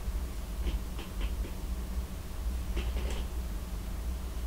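A few faint, scattered rustles and ticks of hands handling a clump of deer hair, over a steady low hum.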